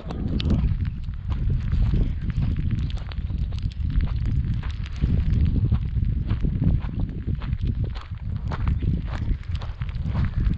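Footsteps crunching over loose rock and gravel, with many small sharp clicks of stones underfoot, over a steady low wind noise on the microphone.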